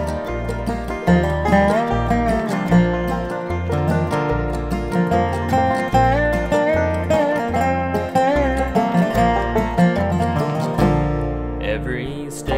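Instrumental break of a country-gospel song: plucked strings over a steady, evenly paced bass line, with a wavering lead melody.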